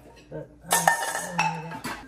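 Metal pots and pot lids clanking and clinking against each other as they are handled in a kitchen cabinet. The clatter starts about two-thirds of a second in, with several strikes that ring briefly.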